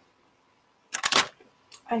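A quick cluster of sharp knocks and clatters about a second in, as a small object falls over, followed by a short cry of "ay".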